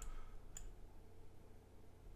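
Two faint computer mouse clicks about half a second apart, over a low steady hum.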